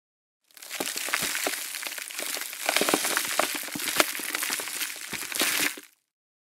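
Gritty crackling and crunching sound effect under a production-company logo reveal: a dense run of sharp clicks and crackles over a bright hiss. It starts about half a second in and fades out just before the end.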